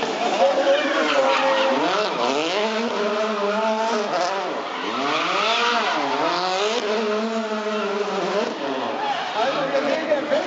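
Volkswagen Polo R WRC rally car's 1.6-litre turbocharged four-cylinder engine revving up and down over and over as the car drifts sideways, with tyres squealing on the tarmac.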